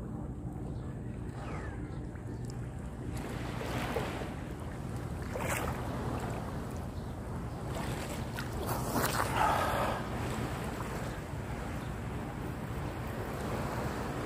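Seawater lapping and sloshing close to a phone held at the surface by a swimmer, with a few louder splashes about four, five and a half and nine seconds in. A steady low hum runs underneath.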